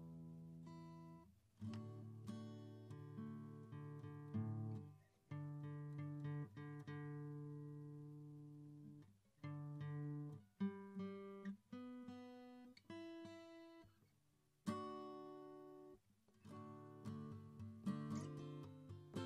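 Solo cutaway acoustic guitar played unaccompanied: picked and strummed chords ring out and fade one after another, with a brief near-silent pause about three-quarters of the way through.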